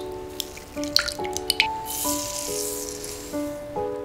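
Beaten egg pouring into a glass bowl, with a few sharp drips and splats in the first couple of seconds, then a brief rushing pour of granulated sugar. Soft background music plays throughout.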